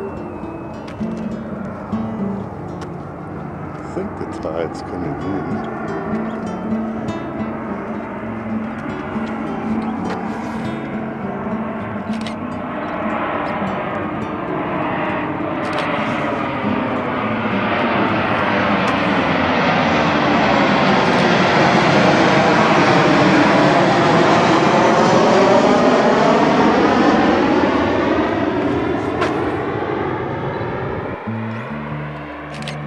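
A jet airplane passing overhead, growing steadily louder through the middle, loudest about three-quarters of the way through, then easing off. Plucked-string background music plays underneath and is plainest in the first third.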